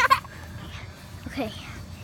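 A child's short high-pitched vocal cry at the very start, then a faint spoken word; between them only low background noise.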